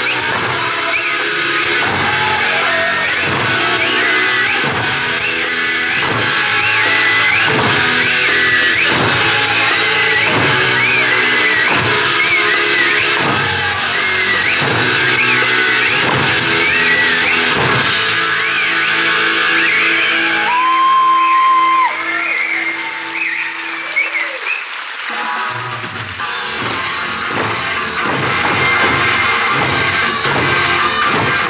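Eisa drumming: large barrel drums and small hand drums struck together on a steady beat, over accompanying Okinawan eisa music with a melody line. About two-thirds through, the beat drops out for a few seconds under a held note, then the drumming comes back in.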